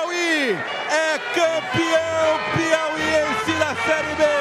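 A man's excited voice shouting in quick, steeply falling cries, with music coming in underneath about halfway through as a steady low bass.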